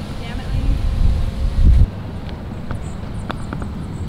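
Wind buffeting the microphone outdoors, gusting louder and then cutting off abruptly about two seconds in. After that comes quieter open-air background with a few faint clicks.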